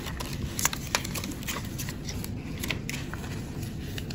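A sheet of paper rustling and crinkling as hands fold its cut corners into a pinwheel, with a few sharp crackles.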